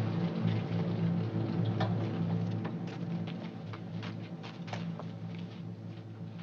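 Orchestral film score fading out, leaving a steady low hum under scattered sharp clicks of boot footsteps.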